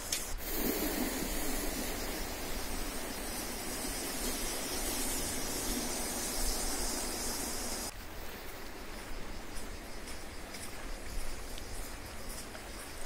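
Steady rushing noise of wind and sea surf washing against coastal rocks, cutting off abruptly about eight seconds in. Then a quieter stretch with a few light footsteps on a dirt path.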